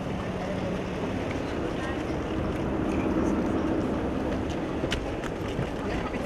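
Street din of idling cars with low rumble and indistinct voices of a crowd, with a few sharp clicks about five seconds in.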